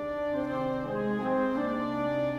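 A chamber-orchestra passage in slow sustained chords, with French horns prominent over strings and woodwinds and a steady low bass note beneath. The chords shift from note to note.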